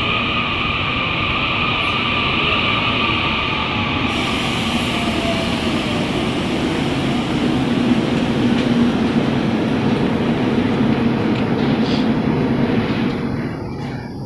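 Electric passenger train rolling into a station platform and slowing to a stop. A steady rumble of cars passing comes with a high-pitched squeal that fades over the first several seconds. The rumble dies away near the end as the train comes to a halt.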